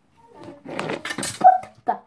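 Plastic and metal parts scraping and rattling as a circuit board is pulled out of a DVD player, with a boy's short wordless exclamations of effort, the loudest about one and a half seconds in.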